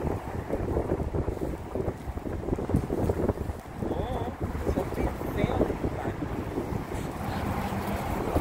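Wind buffeting the microphone in an uneven, fluttering rumble, with two brief high peeps around the middle.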